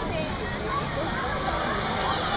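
Many overlapping voices of riders shouting as the Rameses Revenge top-spin ride swings its gondola, over a steady low rumble from the ride.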